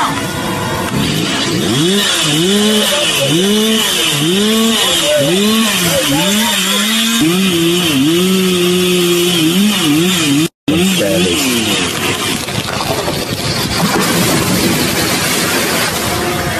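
Chainsaw revved up and down in quick repeated pulses, about one and a half a second, then held at a steady pitch for a couple of seconds. The sound cuts out briefly past the middle, and a rougher, noisier stretch follows.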